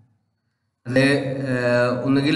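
A man's voice in a lecture: silence for most of the first second, then a long drawn-out syllable that runs into speech.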